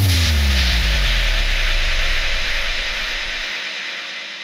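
Closing electronic sound effect of an intro jingle: a deep bass boom with a falling pitch sweep and a hissing noise wash that fades out over about three and a half seconds.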